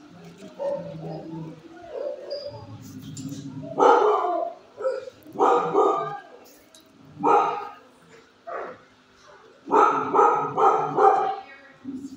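Dog barking in loud single barks a second or two apart, then a quick run of several barks near the end.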